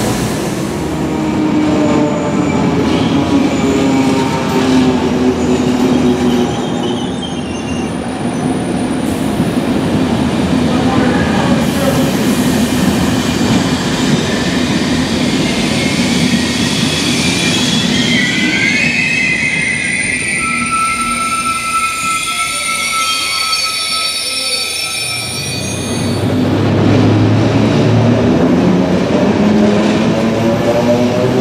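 A passenger train rolling past close by along a station platform, its wheels and coaches making a steady rolling rumble. High wheel squeal comes in about halfway through. Near the end a locomotive draws alongside with a louder, deeper running sound.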